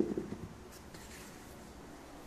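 A light knock on the kitchen counter with a short clatter at the very start, then soft rubbing and rustling as chapatis are handled in their paper-lined container.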